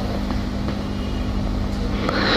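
A steady low hum with a rumbling noise underneath, unchanging throughout.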